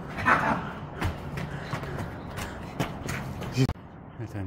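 Footsteps on stony, gravelly ground: a quick run of sharp steps, about three a second.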